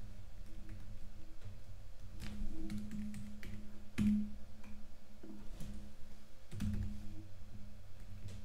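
Computer keyboard keystrokes and mouse clicks in scattered runs, the loudest about four seconds in, over a steady low hum.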